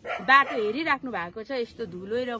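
A woman speaking, her voice rising and falling in pitch.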